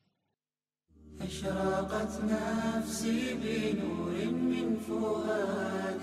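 Closing music: a chanted voice over a low, steady drone, starting about a second in after a brief silence.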